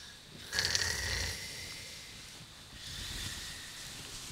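A man snoring in his sleep: one snore about half a second in, then a fainter one around three seconds.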